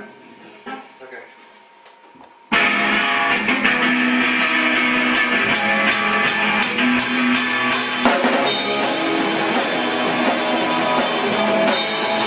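A rock band playing live, guitar and drum kit, coming in all together about two and a half seconds in after a short quiet stretch. The next few seconds carry a run of drum and cymbal hits over the guitars.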